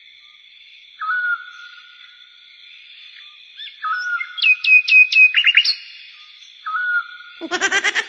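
High whistled chirps over a faint steady high tone. A single chirp comes about a second in, another near four seconds and another near seven, with a quick run of about five falling chirps in between.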